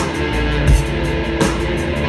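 A live rock band playing an instrumental passage: electric guitars and bass over a drum kit keeping a steady beat, with heavy low drum hits standing out.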